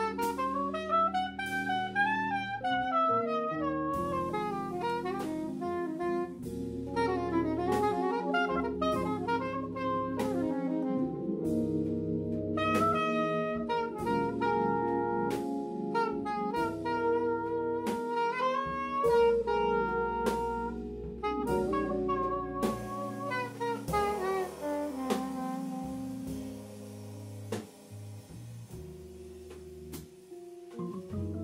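Live jazz band: a soprano saxophone plays a fast, winding melodic line over drum kit and hollow-body electric guitar accompaniment. The saxophone drops out near the end and the band plays on more quietly.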